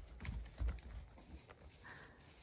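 Goat kids' small hooves stepping and hopping on straw bales: a few scattered soft clicks and thumps, the loudest about half a second in.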